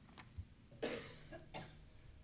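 A single short cough about a second in, with a faint knock just before it.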